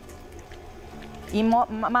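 KitchenAid Artisan stand mixer running, its flat beater working a soft, sticky gluten-free bread dough as water is added; a low, steady hum. A woman's voice comes in after about a second.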